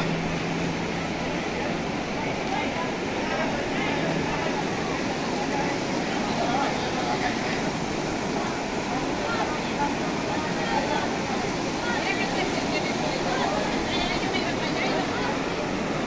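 Floodwater rushing through a street, a steady even flow without a break.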